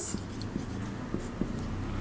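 Whiteboard marker writing: faint short strokes and taps of the felt tip on the board, over a low steady hum.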